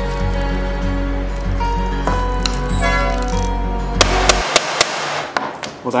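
Background music, which stops about four and a half seconds in, followed by a few quick hammer strikes on a corrugated nail set, driving a corrugated fastener into a mitered cypress frame corner. The fastener does not go deep enough into the wood.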